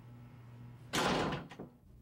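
A wooden door shutting once, about a second in, with a brief reverberant tail, over a faint steady low hum.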